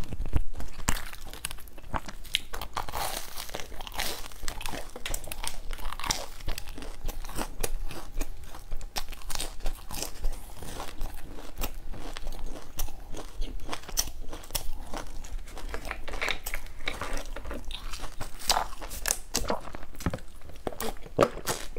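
Close-up mouth sounds of biting and chewing a crusty round filled bread: repeated crunching and crackling of the crust with wet chewing between bites.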